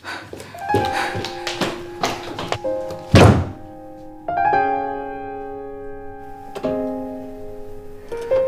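Drama score music with a run of sharp knocks and one heavy thud, the loudest sound, about three seconds in. From about four seconds in it settles into sustained piano-like chords.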